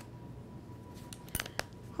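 A few sharp light clicks and taps of a metal measuring spoon against a small pepper tin as a fourth teaspoon of black pepper is measured out, starting about a second in.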